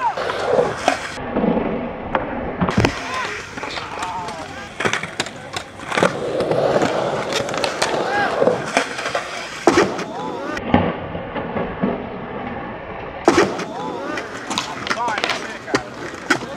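Skateboard rolling on concrete ramps, with a number of sharp clacks and slaps of the deck and wheels hitting the ground scattered through.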